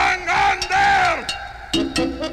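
Several voices yelling together on a swing-band novelty record. Their pitch rises and then falls over about a second, over thin backing, and the full band comes back in near the end.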